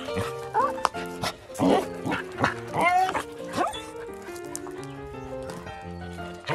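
Dogs barking, growling and yelping at each other in a squabble, a string of short rising-and-falling calls, over background music.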